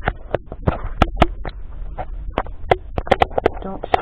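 Handling noise from the camera being picked up and moved: a run of irregular sharp clicks and knocks, a few a second, over a low hum.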